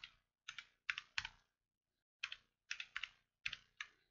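Typing on a computer keyboard: about ten faint, sharp keystrokes in short irregular runs, with a pause of about a second partway through.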